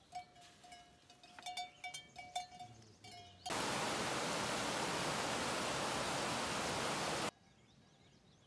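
Rushing mountain stream: a loud, even rush of water that starts abruptly about three and a half seconds in and cuts off just before the end.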